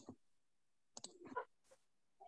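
Near silence with a few faint clicks: one right at the start and a small cluster about a second in.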